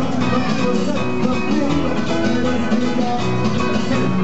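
Loud live cuarteto music from a band on stage, heard through the PA from among the audience.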